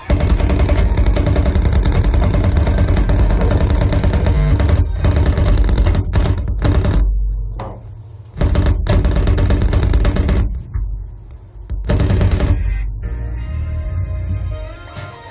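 Harsh noise music: a loud, dense, distorted wall of noise, heaviest in the bass. It is continuous for the first few seconds, then starts stuttering, with sudden cut-outs and restarts, a lull just before the middle and another a little after it, and a quieter stretch near the end.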